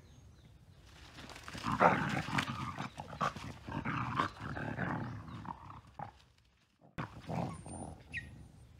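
Two dogs play-fighting, growling in rough, irregular bursts from about a second and a half in. The sound breaks off briefly about six seconds in and returns for a moment near the end.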